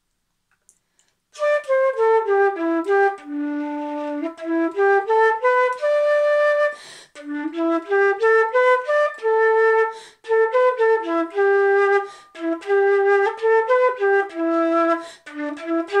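Solo concert flute playing a melody of single, mostly short notes in its low-to-middle range, starting about a second and a half in, with two brief pauses near the middle.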